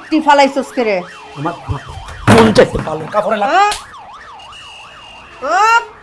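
A siren-like warbling tone in the background, rising and falling quickly about three times a second. Loud voices break in over it.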